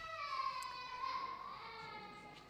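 A young child crying, one long high wail that sags in pitch near the end.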